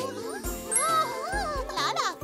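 Bouncy children's cartoon background music: a steady beat about twice a second and a stepping bass line under tinkling chime-like sounds and wavering melody lines, with a quick falling sweep near the end.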